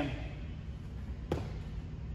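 A single thud about a second in as feet land from a jump squat on a rubber gym floor, over a low steady hum.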